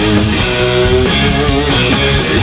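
A blues-rock band playing live in an instrumental passage: electric guitar sustaining notes over electric bass and drums, with a steady beat of cymbal hits.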